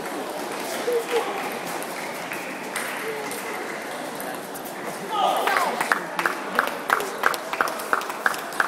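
Table tennis ball being hit back and forth in a rally, bat and table strikes as short sharp ticks about three a second, starting about five seconds in. Crowd chatter from the hall runs throughout.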